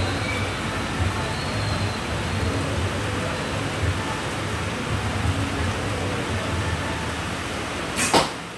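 Steady background noise: an even hiss with a low hum underneath.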